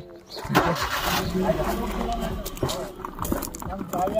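A motor vehicle's engine running with a low, steady rumble, after a brief burst of noise about half a second in. Faint voices are heard over it.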